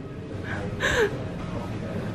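A short breathy laugh about a second in, over a low steady background rumble.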